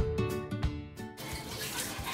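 Background music with a steady beat that cuts off about a second in, giving way to the steady hiss of water running from a handheld shower sprayer in a metal grooming tub.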